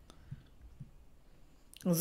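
Near silence with a couple of faint, soft clicks, then a woman starts speaking near the end.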